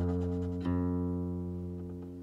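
A Ming-dynasty Fuxi-style guqin with silk strings played slowly and solo. A ringing note dies away, then one new plucked note sounds about two-thirds of a second in and sustains as it fades.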